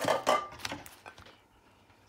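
Clatter of a plate and metal steamer being handled: a loud knock with a brief ring at the start, then a few lighter knocks and clinks through the first second.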